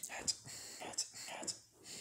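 A person whispering, with sharp hissing consonants recurring every half second or so.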